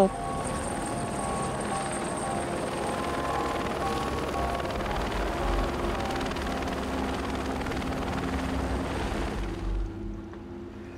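Turbine helicopter flying past, with a steady rotor chop and a faint high whine; the sound drops away near the end.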